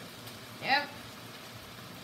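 A voice says "Yep" once, under a second in, over a faint, steady hiss of onions cooking in a pot on the stove.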